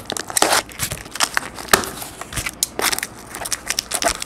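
Scissors cutting through packing tape along the seam of a cardboard box, a run of irregular crackles and snaps with the cardboard rustling under the hands.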